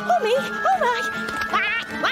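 Cartoon duck quacking in a few short, bending calls, with a rising, wavering cry near the end, over a light orchestral music score.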